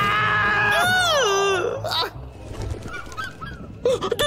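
A cartoon man's loud, drawn-out yell, held steady and then sliding down in pitch, over the hiss of a freeze-ray gun firing. After about two seconds it gives way to quieter, scattered sounds.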